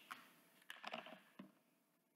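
Near silence with a few faint clicks and taps from a small plastic lip balm tube and its packaging being handled.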